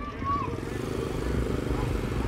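A vehicle engine running steadily, a low even hum.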